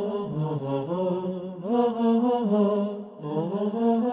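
A single voice chanting a slow, ornamented melody in the style of an Islamic nasheed, holding long notes and sliding between them. There is a brief break about three seconds in.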